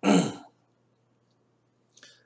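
A man clears his throat once, briefly, in a pause between sentences.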